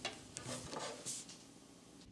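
Faint rubbing and scraping of a steel coat-hanger wire being twisted into a hole drilled in a golf ball. There are a few small scrapes in the first second, and then it fades.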